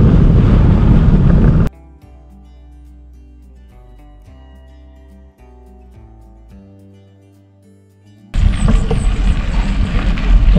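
Loud wind buffeting the microphone of a bicycle descending a dirt road, cut off suddenly about two seconds in by quiet background music with long held notes. The wind noise comes back loud shortly before the end.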